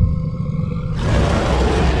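Sound effects for an animated outro: a deep rumbling roar with a few held tones, then a rushing whoosh that comes in suddenly about a second in.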